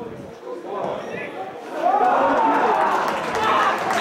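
Several men's voices shouting on a football pitch. The voices turn loud about halfway through, as a goal goes in.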